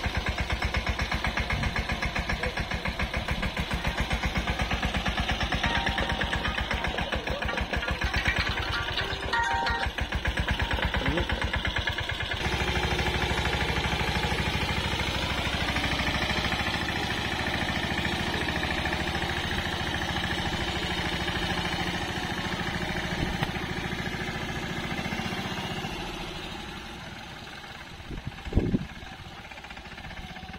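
Mahindra Yuvraj 215 tractor's single-cylinder diesel engine chugging steadily under load as it pulls a drill through the soil. It fades near the end as the tractor moves away, with a brief knock shortly before the end.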